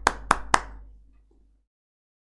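Three sharp hand claps in quick succession, each followed by a short room echo that fades out.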